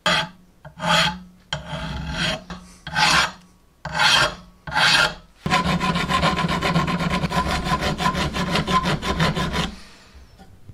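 Flat hand file rasping across a threaded steel pin from an adjustable wrench. It starts as about six separate strokes, then becomes a fast continuous run of filing for about four seconds that stops just before the end.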